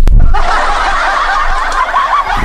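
Laughter sound effect laid over the picture, a chorus of chuckling that starts abruptly about a third of a second in and carries on to the end.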